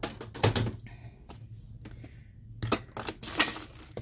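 Clear plastic packaging crinkling and rustling in short bursts as a small metal cutting die is handled, loudest about half a second in and again past the middle.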